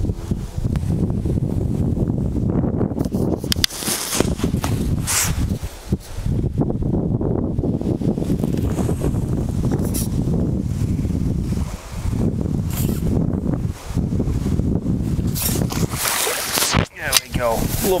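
Steady wind rumble on the microphone, broken by a few brief knocks, with splashing near the end from a hooked carp thrashing at the surface as it is drawn in on pole elastic.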